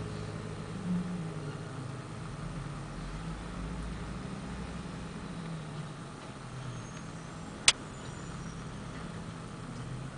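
Rear-loading garbage truck's diesel engine idling steadily, with a slight swell about a second in. One sharp knock about three-quarters of the way through as a trash cart is handled at the back of the truck.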